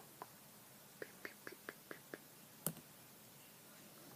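Light plastic clicks and taps from handling a Lego-brick bow tie close to the microphone: a quick run of about seven ticks a second in, then one sharper click just before the middle.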